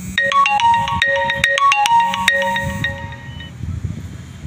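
Mobile phone ringtone: a melody of bright, marimba-like notes, one short phrase played about twice, lasting roughly three seconds and then stopping.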